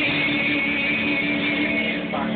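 Karaoke music with guitar over a bar's sound system, with long notes held steady, heard through a phone's microphone.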